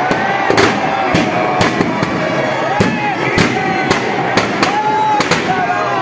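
Firecrackers in burning Dussehra effigies going off in an irregular string of sharp bangs, about a dozen in all, over a shouting crowd.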